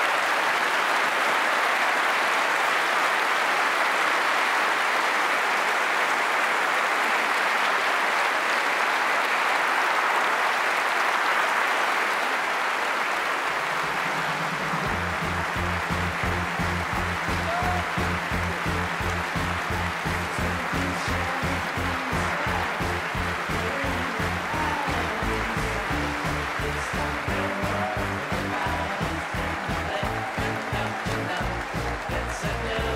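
A large audience applauding. About halfway through, music with a steady beat comes in and plays over the continuing applause.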